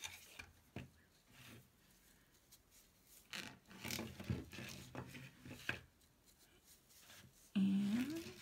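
Jute rope rubbing and rasping as it is pulled off its spool and wound around a glass bottle, with a few light clicks and knocks from the bottle and spool, busiest in the middle of the stretch.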